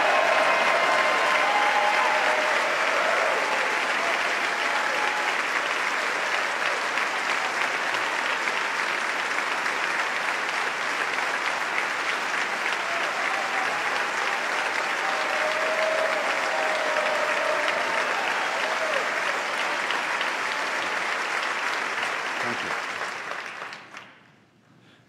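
Large audience in a big hall applauding at length, dense steady clapping with a few voices mixed in, dying away just before the end.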